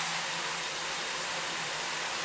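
Water running steadily into a tiled shower pan whose drain is plugged with a rag, filling the pan for a flood test to find a leak. An even hiss without break.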